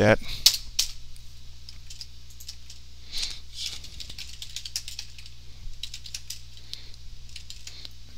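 Computer keyboard keystrokes, scattered and irregular, as commands are typed into a terminal, over a steady low electrical hum.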